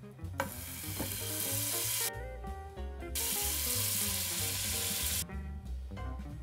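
Seasoned chuck roast searing in hot olive oil in a Dutch oven over medium-high heat: a sizzle that starts as the meat goes in and drops away briefly twice.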